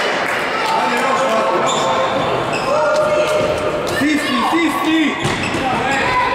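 Futsal ball being kicked and bouncing on a wooden sports-hall floor in the run of play, sharp thuds echoing in the hall, with players calling out over it.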